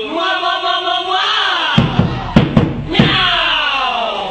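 Voices chanting with falling pitch glides, then kompang, Malay hand-struck frame drums, come in a little before halfway with a few sharp, heavy beats while the voices carry on.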